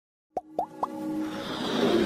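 Animated-logo intro sound effects: three quick pops, each sweeping upward in pitch, about a quarter second apart, then a rising electronic music swell that builds toward the end.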